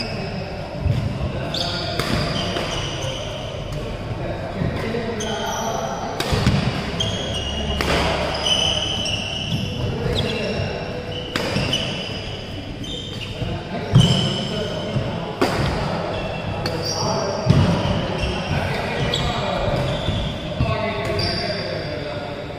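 Badminton doubles rally: sharp racket hits on the shuttlecock and short squeaks of court shoes on the floor, echoing in a large hall.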